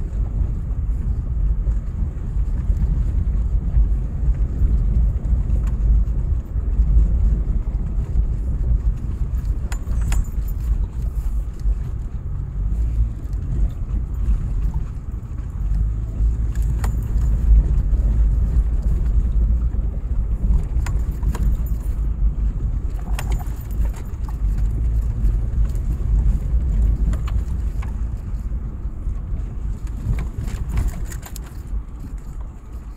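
Car driving over a rough dirt track, heard from inside the cabin: a steady low rumble of tyres and engine, with occasional light clicks and rattles.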